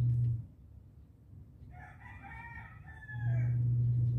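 A steady low hum cuts out about half a second in and comes back just after three seconds in. In the gap, a faint pitched animal call of several bending tones lasts about two seconds.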